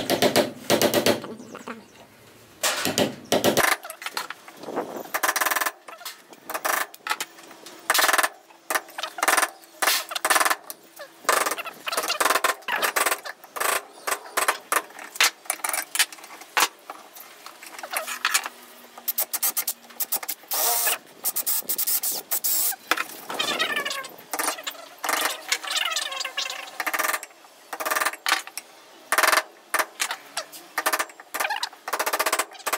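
A hand chisel cutting and scraping out a mortise in a hardwood block held in a metal vise. The sound is a long run of irregular sharp knocks and scrapes in clusters.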